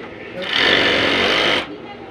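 Pegasus W500 industrial piping machine running for about a second of test stitching, then stopping abruptly. The needle timing has been set, and only the thread tension is left to adjust.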